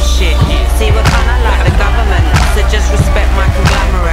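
Hip-hop music soundtrack with a heavy bass line and a steady drum beat, about one hit every 0.6 seconds.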